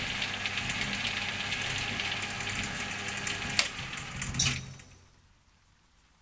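Sealey SM27 metal lathe running with its auto-feed engaged: a steady mechanical whirr with a fine rattle from the belt and gear drive. A sharp click comes about three and a half seconds in and a few clacks follow, then the machine is switched off and runs down to silence about five seconds in.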